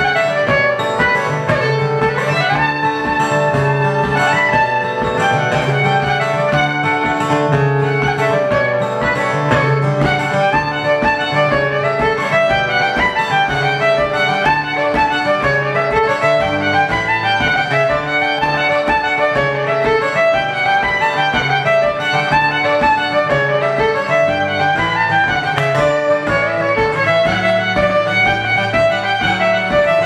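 Fiddle and acoustic guitar playing a jig live: a quick bowed fiddle melody over steady strummed guitar chords keeping an even rhythm.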